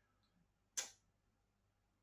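Near silence, broken by a single short tick just under a second in.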